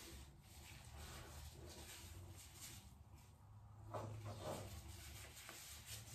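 Near silence with faint rubbing sounds, briefly a little louder about four seconds in.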